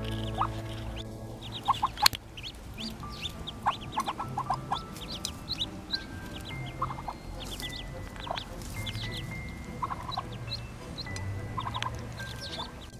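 Muscovy ducklings peeping: many short, high chirps in quick scattered runs, with background music playing under them.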